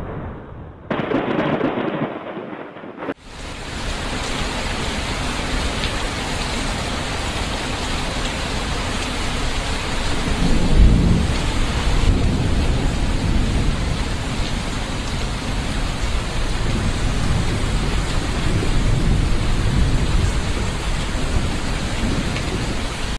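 Heavy rain pouring steadily, setting in about three seconds in, with a low rumble of thunder near the middle.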